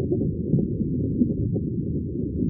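Steady, muffled low rumble of underwater water ambience, dull and deep with nothing in the higher range.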